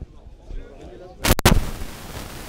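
Two loud, sharp knocks a fraction of a second apart about a second and a quarter in, followed by steady rustling noise: handling noise on the camera microphone as the camera is swung down and carried.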